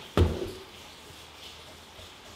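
A single dull thump just after the start, then only faint low background noise.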